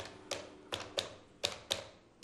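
Desk telephone buttons being pressed to dial a number: six sharp clicks, roughly in pairs a quarter second apart.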